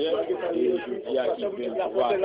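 Indistinct chatter of many people talking at once in a hall, with overlapping voices and no single clear speaker.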